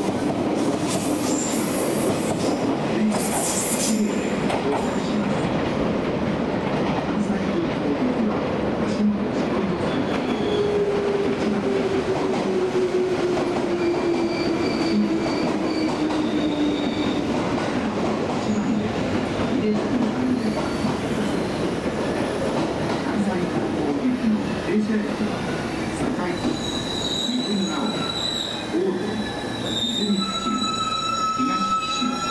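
JR West 283 series tilting limited-express electric train running out of the station and round a tight curve, with continuous rolling noise from wheels on rail. A tone slowly falls in pitch about ten seconds in, and thin, high wheel squeal from the curve comes and goes toward the end.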